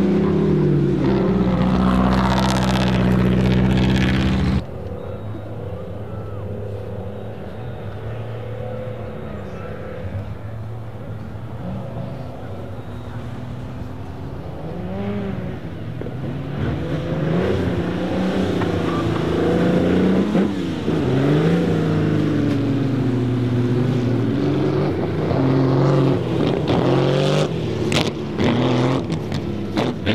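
Ferrari 250 Testa Rossa's V12 with six twin-choke Weber carburettors running hard close by. About four and a half seconds in it cuts off suddenly to a quieter engine note. From about halfway on, the revs rise and fall again and again as the car is slid on the ice.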